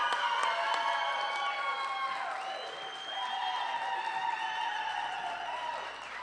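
Audience applause and cheering mixed with music of long held notes that change pitch every second or two.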